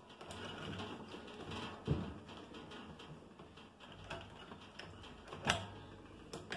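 A quick-disconnect being worked on a Cornelius keg's post: quiet handling with two sharp clicks, one about two seconds in and a louder one near the end, as the fitting comes off the post.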